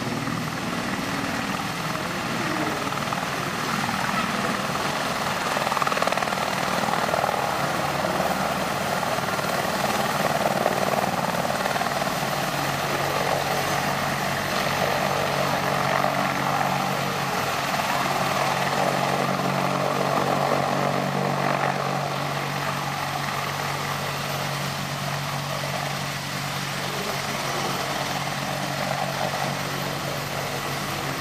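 AH-64 Apache attack helicopter lifting off and hovering low: the whine of its twin turboshaft engines under the main rotor's blade noise, a steady, loud sound that eases a little about two-thirds of the way in.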